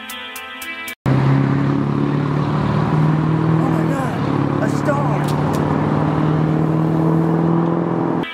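Guitar music that cuts off suddenly about a second in, then a car engine running close by, its steady hum creeping slowly up in pitch, under a loud noisy background.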